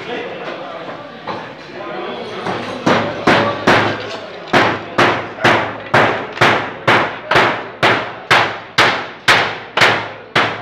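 A hammer nailing a wooden plank laid on corrugated metal sheeting: steady blows about two a second, starting about three seconds in, each ringing briefly.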